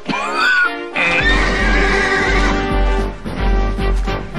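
Horse whinnying sound effect: a short call about half a second in, then a longer wavering one from about a second in, over background music with a pulsing bass beat.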